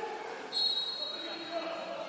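Referee's whistle in a water polo match: one sharp blast about half a second in, a high steady tone that fades away over about a second in the echoing pool hall.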